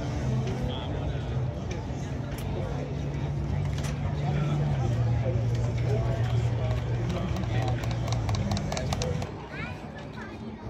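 Car-show ambience: a vehicle engine running steadily at low speed, its pitch stepping down about five seconds in and cutting out near the end, under background chatter.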